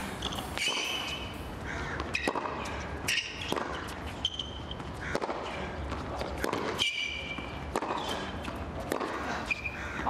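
Tennis rally on a hard court: the ball struck back and forth by racquets and bouncing, at irregular intervals, with players' shoes squeaking briefly on the court surface several times.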